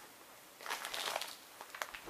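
Plastic bag of salt rustling and crinkling as it is handled and set aside, with a few light clicks near the end.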